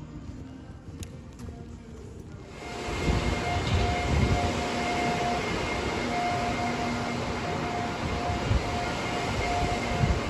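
Loud rushing and rumbling noise on a phone microphone carried on horseback, coming in suddenly about two and a half seconds in after a quieter start, with a faint steady hum over it.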